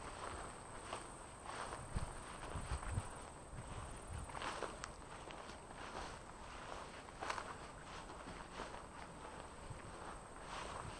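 Footsteps walking through dry, overgrown grass, about one step a second, with a few dull thumps about two to three seconds in.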